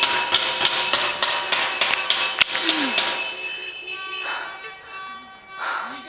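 Music: held tones over a quick tapping beat for the first half, then held chord tones that grow quieter, with brief bits of voice.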